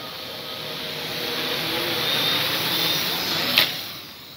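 Homemade Arduino quadcopter's motors and propellers whirring in flight, growing steadily louder over a few seconds, then falling away near the end after a short click.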